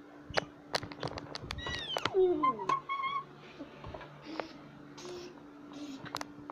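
Hard plastic toys clicking and knocking together as they are handled, over a steady low hum. About a second and a half in there is a short pitched sound that glides down, followed by a few brief tones.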